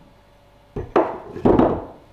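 Steel milling tool holders with tapered shanks set into and lifted from slots in a wooden wall rack: three clunks of metal on wood about a second in, the last one longer.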